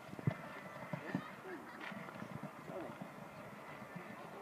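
A person coughing a couple of times close to the microphone, over faint voices in the background.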